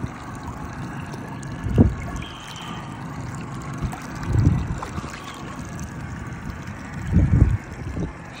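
Water splashing and sloshing around a striped bass held by hand at the surface as it is released, with three louder low bumps a few seconds apart.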